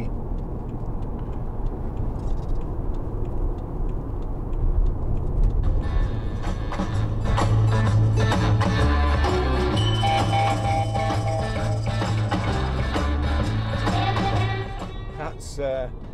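Steady road and engine noise inside the cabin of a moving BMW 520d. About six seconds in, a rock song with a strong bass line starts playing from CD on the car's stereo, and it is turned down near the end.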